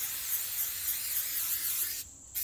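Aerosol can of permethrin spray hissing in one long steady burst, cutting off just before the end.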